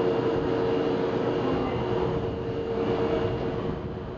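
Osaka Municipal Subway 20 series electric train standing at the platform, its onboard equipment giving a steady hum with two held tones over a noisy rumble, easing slightly near the end.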